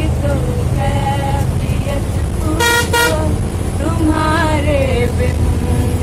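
Bus engine and road rumble on a moving bus, with two short vehicle-horn toots in quick succession a little under halfway through.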